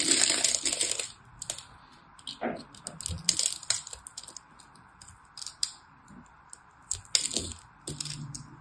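A craft knife working through a grid-scored bar of soap, the small soap cubes crackling and snapping off in quick clusters of crisp clicks. The densest burst comes in the first second, and shorter bursts follow every second or two.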